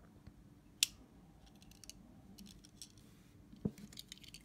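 Handling of small die-cast model cars: faint clicks, one sharp click about a second in as the Ford Mustang model's opening bonnet is snapped shut, and a dull knock near the end as a model car meets the wooden table.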